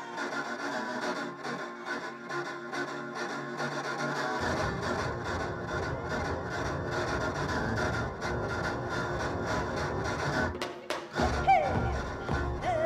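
Live band music with Korean traditional long zithers played with sticks. About four seconds in, heavy drums and bass come in under them. Near the end the music drops out briefly, then a loud, wavering, gliding high tone starts.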